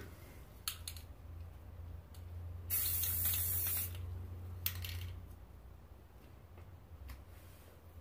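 Aerosol spray paint can spraying one hissing burst of about a second, about three seconds in. A few much briefer sounds come before and after it.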